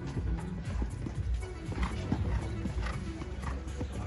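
A show-jumping horse cantering on a sand arena, with the repeated dull beats of its hooves. Music plays in the background.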